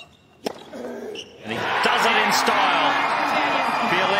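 A tennis serve struck with a single sharp crack of racket on ball about half a second in, followed about a second later by a stadium crowd breaking into loud, sustained cheering and shouting for a match-winning ace.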